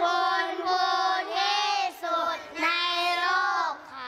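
Young children singing together in unison, in three drawn-out phrases with short breaks between them.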